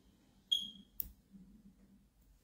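A short, high electronic chime that rings briefly and fades, followed about half a second later by a sharp click.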